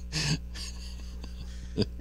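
A man's short, breathy laugh just after the start and a brief second laugh burst near the end, over a steady low electrical hum.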